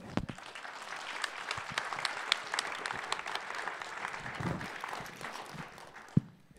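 Audience applauding: many hands clapping, building over the first second, holding steady, and dying away near the end.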